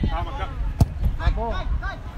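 Men talking at a football pitch, with one sharp thud a little before the middle: a football being kicked long into the air.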